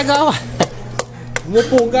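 A small plastic toy knocking against thick frost and ice built up on a freezer: about four sharp, hard taps, spaced a little under half a second apart. A child's voice is heard at the start and again near the end.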